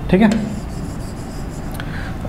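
A stylus rubbing and scratching on the surface of an interactive display board as the working is erased and rewritten, with a brief short tap near the end.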